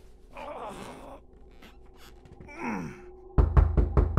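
A man's breathy sigh, then a low falling groan, then a run of heavy knocks on a door near the end.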